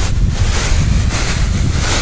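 Wind buffeting the microphone with a loud, uneven rumble, over which the hiss of a pump garden sprayer's wand misting the spray comes and goes.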